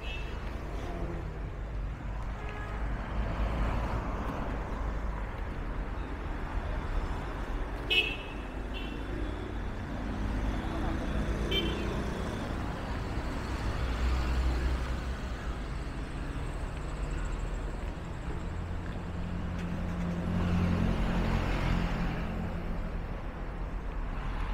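Road traffic on a wide city street: a steady rumble of cars driving past, swelling as vehicles pass. Short car-horn toots sound about eight seconds in and again near twelve seconds.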